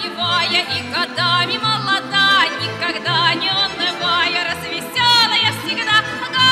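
A Russian folk choir singing in high, ringing voices with strong vibrato, over an instrumental accompaniment with bass notes about twice a second.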